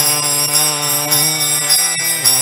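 Kirtan music: a harmonium sustaining a chord under a long held sung note, with jingling metal hand cymbals (karatalas) keeping the beat.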